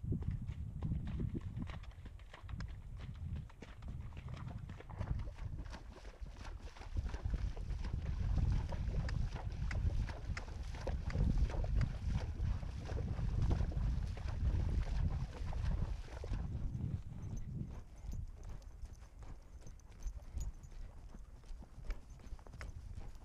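Horse hooves splashing and sloshing through shallow water on a flooded trail, with a dense run of hoofbeats. About sixteen seconds in, the splashing gives way to hoofbeats on dry dirt.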